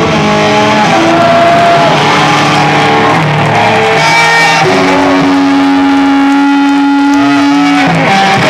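Live rock band playing, electric guitars to the fore, with a long held guitar note through the second half.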